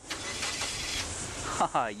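A 1999 Ford Laser's 1.8-litre 16-valve four-cylinder engine starting, beginning suddenly and running steadily.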